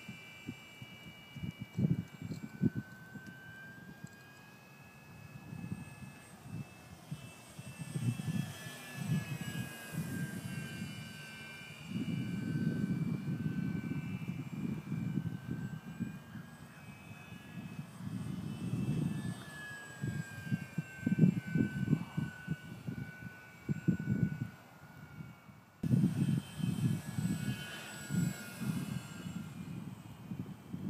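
Electric motor and propeller of a ParkZone F4U-1A Corsair RC plane flying overhead: a high whine whose pitch slides slowly up and down as the plane passes. A gusty low rumble of wind on the microphone comes and goes over it.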